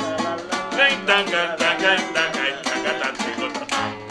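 Acoustic guitar strummed in a lively gaita zuliana rhythm, a short instrumental passage between sung lines of the song.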